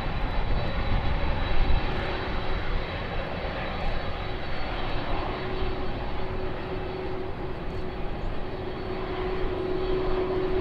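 Jet engines of a Delta Boeing 767 idling as it taxis, a steady rush with a low hum that grows stronger near the end and a faint high whine above it.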